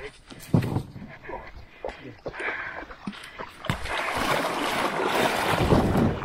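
A loaded aluminium canoe on a portage cart knocking and rattling as it is run down a rock slab. A rising rush of scraping and water builds over the last two seconds as its bow slides into the lake.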